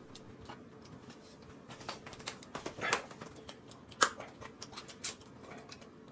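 Crisp lettuce leaves rustling and crackling as they are handled and folded at the table, with a few light, sharp clicks.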